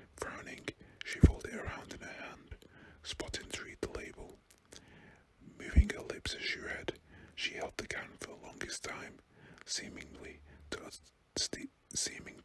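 A man whispering close to the microphone, reading a story aloud in phrases. Two short low thumps of breath on the microphone, about a second in and about six seconds in.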